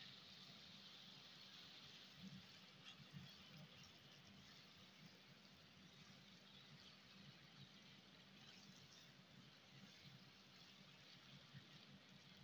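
Near silence, with faint sizzling and soft stirring of a silicone spatula through mashed eggplant masala in a nonstick frying pan; a few faint knocks about two to three seconds in.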